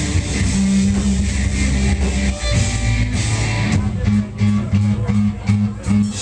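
Live rock band playing loud electric guitar and bass, with sustained low notes in the first half giving way to choppy, stop-start playing with short gaps in the second half.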